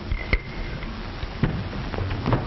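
A single sharp click, with a faint steady high tone around it, then a few faint low knocks over steady old-soundtrack hiss.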